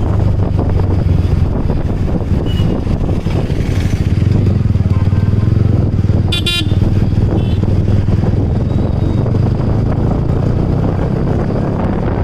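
Motorcycle engine running steadily, heard from the rider's seat while riding in traffic. A vehicle horn toots briefly about six and a half seconds in.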